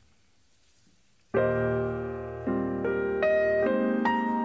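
Near silence for about a second, then a grand piano comes in with a held chord and moves on through several more chords, the opening of a jazz song.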